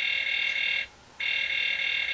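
Toy Story Collection Buzz Lightyear figure's wrist laser sound effect: two steady electronic buzzing tones, each about a second long, with a short gap between them.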